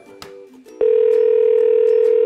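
Telephone line tone heard over a desk phone: one steady, even tone that starts a little under a second in and lasts about a second and a half before cutting off sharply.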